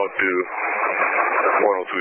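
Fire and dispatch radio traffic: a voice speaking over a two-way radio channel, sounding thin and narrow with no deep or high tones.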